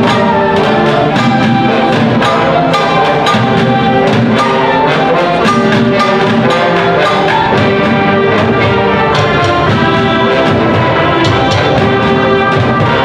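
Middle-school concert band playing with brass to the fore over a steady beat of sharp percussion strikes from junkyard percussion: plastic buckets, metal trash can lids, a trash can and a car brake drum.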